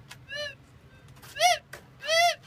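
Minelab XT 18000 metal detector giving two short tones that rise and fall in pitch as the search coil is swept over the ground, the second louder than the first.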